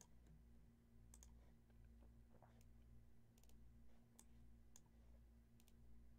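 Near silence with a faint steady hum, broken by a handful of faint, short computer-mouse clicks spread through the few seconds.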